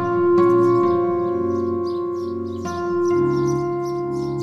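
Background score: soft sustained keyboard chords over one steady held note, the chord changing about a second in and again near the three-second mark.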